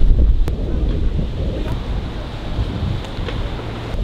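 Wind buffeting the microphone outdoors, an uneven low rumble with a couple of faint clicks.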